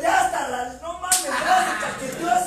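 A single sharp smack of hands about a second in, over men's excited voices and laughter.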